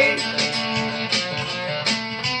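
Solid-body electric guitar strummed in a rockabilly rhythm, its chords ringing between strokes.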